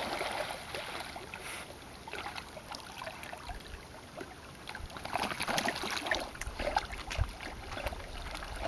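Water splashing and sloshing as dogs swim and wade through a lake, with a burst of splashes about five to six seconds in. A low rumble of wind on the microphone comes in near the end.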